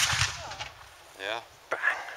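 A muzzle-loading field cannon firing its rammed charge: the sharp report is followed by a rumble that dies away over about half a second.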